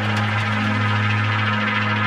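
Electronic tech-house music from a DJ mix: a held low synth drone under a dense layer of sustained synth tones, with almost no drum hits, as in a track's breakdown.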